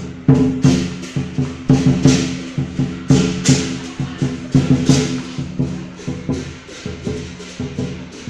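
Chinese lion dance percussion: drum strikes and cymbal clashes, several a second in an uneven driving rhythm, over a steady low ringing like a gong.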